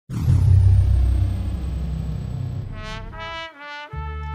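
Mariachi band intro: a loud low chord starts the music and slowly fades, then trumpets play three short notes near the end.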